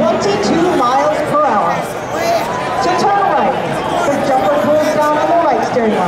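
Crowd of spectators talking, many voices overlapping in a steady chatter.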